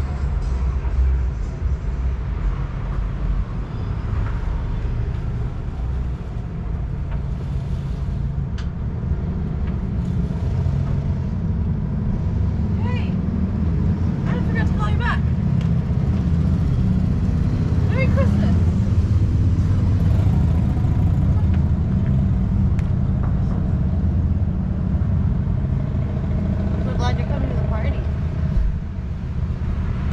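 Street ambience: a steady low rumble of road traffic that swells in the middle, with faint voices now and then.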